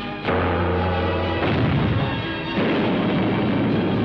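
Film sound effects of cannon fire: three sudden blasts about a second apart, the first a quarter second in, over background music.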